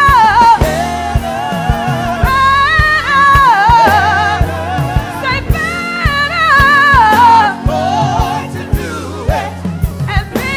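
Gospel praise team singing with a live band: a lead voice carries a melody with bends and runs, backed by other singers, over a drum kit keeping a steady beat and a bass line.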